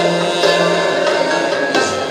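Live music from a small ensemble of oud, violin and other instruments, with sustained bowed notes over plucked oud notes.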